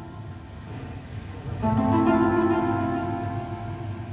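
Music playing from a smart speaker. It is quiet at first; about a second and a half in, a sustained synth-like chord of held notes comes in and slowly fades.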